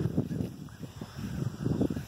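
Footsteps on grass and the rustle of a handheld phone being moved, heard as a run of dull low thuds.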